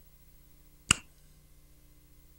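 A single sharp click about a second in.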